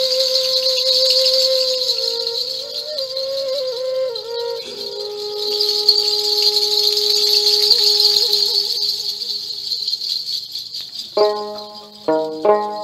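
Rajbanshi folk band instrumental music. A sustained melody line that bends in pitch plays over a continuous rattle, and sharp plucked string notes come in near the end.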